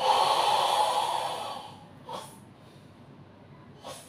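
Forceful, hissing exhalation through the mouth lasting about a second and a half, the controlled breathing of the karate kata Sanchin. It is followed by two short, sharp breath sounds, about two seconds apart.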